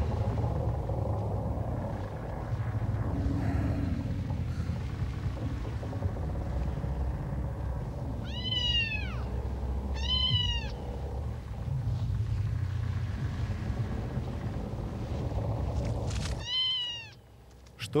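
A cartoon kitten meowing three times, each meow rising and then falling in pitch: two close together about halfway through and a third near the end. Under the first two there is a low steady rumble, which stops just before the last meow.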